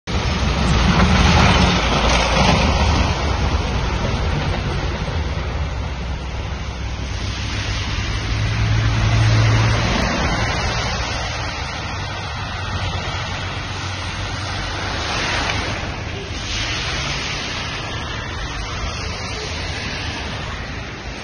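Engines of road-clearing vehicles running under a steady rushing noise, with a deeper engine note swelling about eight to ten seconds in.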